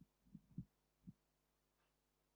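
Near silence: room tone with three or four faint low thumps in the first second or so, then nothing but a faint steady hum.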